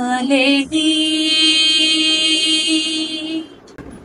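A woman singing a naat with no instruments: a short wavering phrase, then one long held note that dies away shortly before the end.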